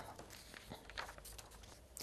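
Near silence: a faint, steady hiss with a couple of soft clicks about a second in.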